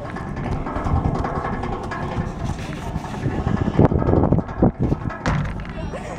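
Low, uneven rumble of wind on the microphone as a playground merry-go-round spins, with a brief voice about four seconds in and a sharp knock about a second later.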